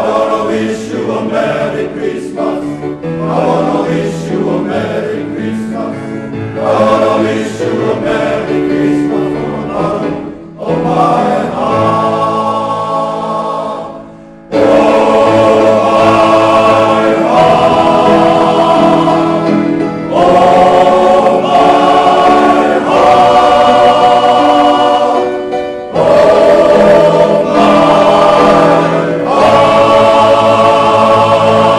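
Male choir singing sustained chords in harmony. Softer in the first half; after a short break about halfway through it comes back in much louder and fuller.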